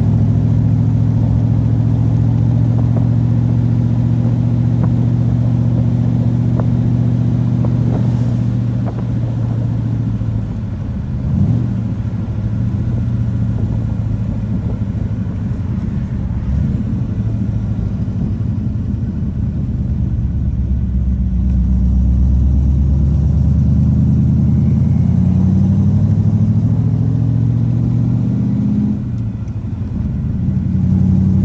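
1974 Corvette Stingray's V8 engine running as the car cruises, heard from the open cockpit with no top on; it eases off about ten seconds in, then pulls with rising revs before dropping back near the end. The owner says the engine runs rough in cold weather.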